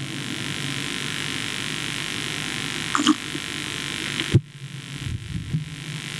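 Steady hiss with a low hum from the sound system and recording, cut off by a sharp click about four seconds in, after which only a faint hum remains.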